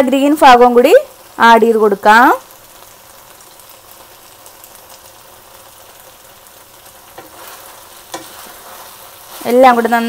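Gobi manchurian sizzling in a pan: a faint, steady frying hiss, with stirring near the end. A voice is heard over it for the first couple of seconds and again just before the end.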